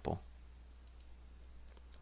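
Two faint computer mouse clicks about a second in, over a low steady hum.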